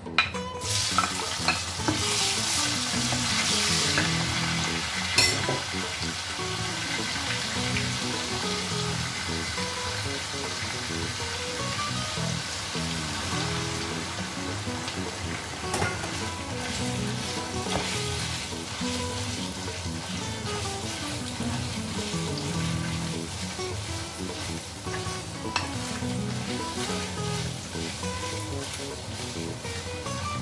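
Diced onion and minced beef frying in hot oil in a frying pan: a loud sizzle that starts suddenly as the onion goes in and is strongest in the first few seconds, then runs on steadily while a wooden spoon stirs the mix, knocking against the pan now and then.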